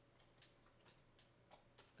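Near silence: quiet room tone with about six faint, irregular clicks.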